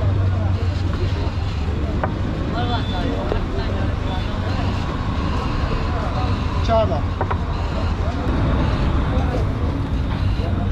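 Busy roadside street ambience: a steady low rumble of traffic and auto-rickshaw engines, with scattered voices of people nearby.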